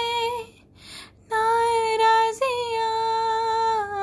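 A woman singing a Hindi film song unaccompanied, holding long vowel notes with no instruments. She breaks off briefly for a breath about half a second in, then holds one long note that steps up in pitch and slowly sinks.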